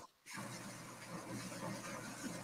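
Faint steady whir of a room air conditioner running, after a brief dropout to silence at the very start.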